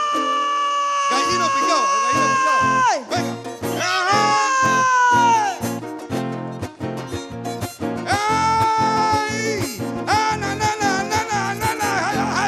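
Panamanian folk band of guitars and violin playing a torrente, the instrumental tune that backs a sung décima: long, high, wailing held notes that each slide down at their end, three times, over a strummed rhythm that comes in about a second in.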